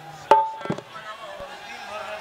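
A single sharp strike with a short ringing tone about a third of a second in, followed by a few softer taps.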